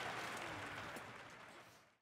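Large arena audience applauding, fading out steadily to silence near the end.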